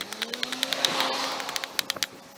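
Hatchet chopping and shaving an ash handle blank stood on end on a wooden chopping block: a quick run of sharp strikes, several a second. A faint low hum rises slightly in pitch behind it.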